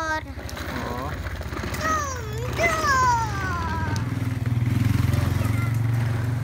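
A motorcycle's engine rumbling low and growing louder toward the end as it passes close by, while a small child calls out briefly near the middle.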